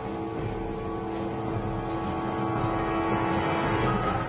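Suspenseful soundtrack music: a held chord of steady tones that slowly grows louder.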